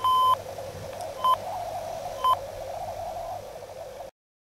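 Digital alarm clock beeping: three high electronic beeps about a second apart, the first one longer, over a faint steady background noise.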